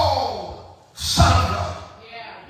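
A man's voice through a handheld microphone and PA. It gives a long, breathy cry that falls in pitch, then about a second in a short, loud, breathy exclamation.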